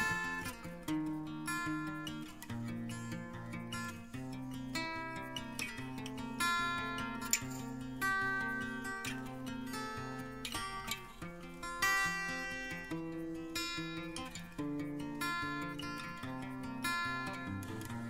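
Instrumental background music with plucked acoustic guitar, notes and chords changing every second or so at a steady level.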